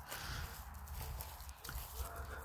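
Faint footsteps through grass in a field, over a low steady rumble on the phone's microphone.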